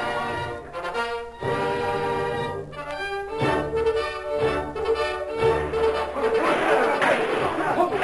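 Orchestral music with brass, a run of held chords that change about every second, used as a dramatic bridge in the radio play. Near the end a rough, noisy sound rises beneath the music.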